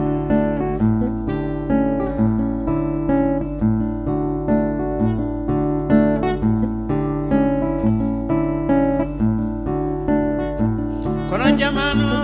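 Acoustic guitar fingerpicked in a steady repeating pattern of plucked notes over a low bass line. Near the end a man's voice comes in singing with a wide vibrato.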